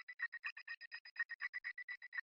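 Faint, thin layer of a sliced sample playing back from FL Studio's Fruity Slicer: a rapid, even stutter of short pitched notes, about twelve a second, with no bass, a texture layer meant to sit in the distance behind the main melody.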